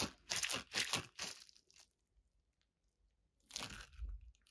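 A gel-bead mesh stress ball squeezed in the hand: several short squeezing sounds in quick succession over the first two seconds, a pause, then one more squeeze near the end.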